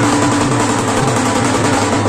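Loud, continuous procession music with drumming, mixed with the noise of a packed crowd.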